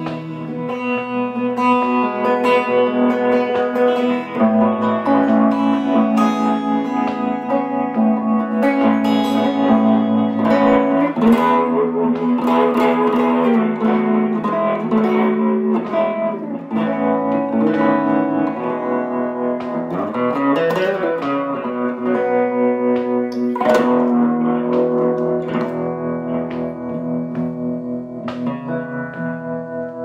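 Guitar playing an instrumental break in a slow song, with sustained, ringing notes in a moving melody and a bending glide in pitch about two-thirds of the way through.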